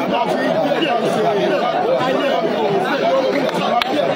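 Speech: several voices talking over one another at a steady level.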